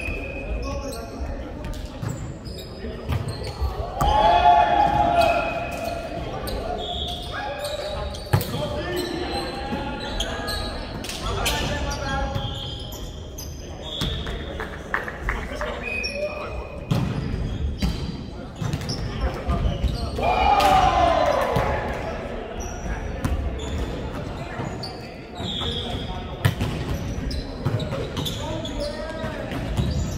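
Volleyball being hit and bouncing on a hardwood court, in repeated sharp smacks, with players shouting and calling out, loudest about four seconds in and again about twenty seconds in. The sound echoes around a large hall.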